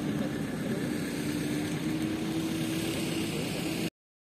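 A vehicle engine idling: a faint steady hum under an even hiss, cutting off abruptly just before the end.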